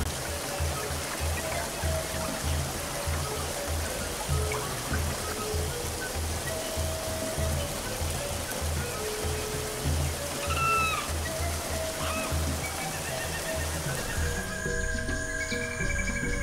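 Background music with a low pulsing beat over a steady rushing-water hiss, with a few short chirps about ten seconds in. Near the end the hiss drops out and the music carries on.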